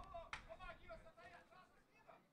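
Faint men's voices calling out across the pitch, with one sharp knock of a football being kicked about a third of a second in; otherwise near silence.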